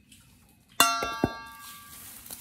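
A metal spoon strikes a stainless steel bowl three times in quick succession about a second in, the first hit loudest, and the bowl rings on and fades.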